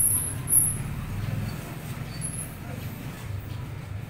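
A steady low rumble like a motor vehicle's engine running, with two short sharp sounds right at the start and about half a second in.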